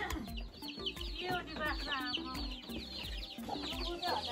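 Domestic chickens clucking, a busy run of short calls.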